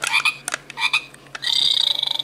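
Electronic frog-croak sound effect from the Ugglys Pet Shop Gross Goldfish toy's sound chip: a few short rasping croaks, then a longer rattling croak in the second half.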